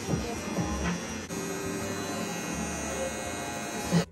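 Background music playing over the steady electric buzz of a pen-style tattoo machine running as it works the needle into skin.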